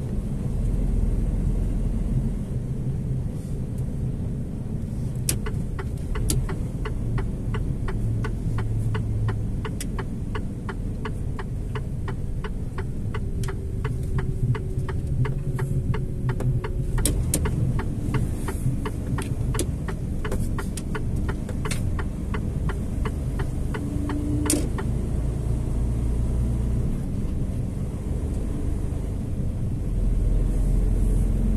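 Vehicle engine and road noise heard from inside the cab, a steady low rumble while driving. Through the middle a long run of even, rapid clicks, typical of the turn indicator ticking while taking the roundabout.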